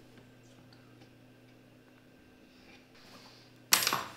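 Faint small clicks of hands handling hardware over a low steady hum, then a short, loud clatter near the end as something is set down or knocked.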